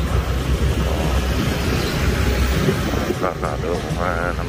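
City street background noise: a steady low rumble with a general hiss, and indistinct voices about three seconds in.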